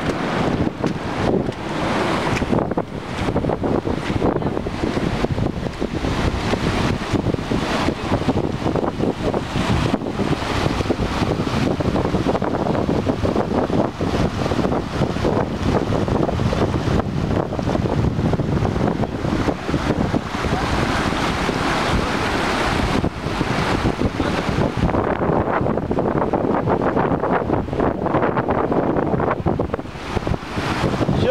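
Floodwater rushing and churning as it pours through a breach in an earthen embankment, mixed with strong wind buffeting the microphone.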